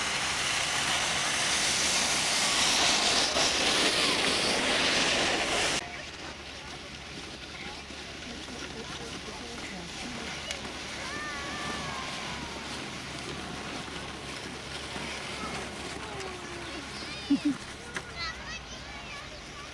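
Outdoor ambience with distant children's and adults' voices. For the first six seconds a loud steady hiss covers everything, then cuts off abruptly, leaving the quieter voices and two short sharp sounds near the end.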